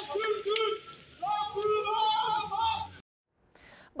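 A man shouting a protest slogan, "Çaykur belongs to the people, it cannot be sold", in a raised voice over a crowd. The sound cuts off abruptly about three seconds in.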